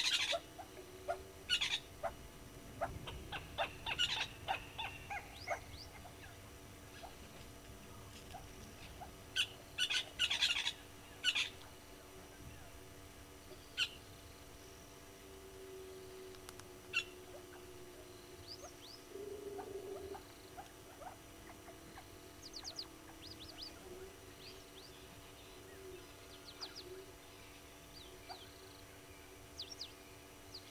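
Wild birds calling: scattered short chirps, whistles and trills, in two busier bursts in the first half and sparser calls after. A faint steady low hum runs underneath.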